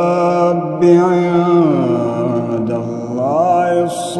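A man reciting the Quran in a melodic chanted style, holding long drawn-out notes. His pitch glides slowly down around the middle and rises again near the end.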